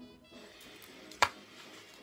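Quiet festive background music, with one sharp crunch about a second in as a mince pie's shortcrust pastry is bitten into.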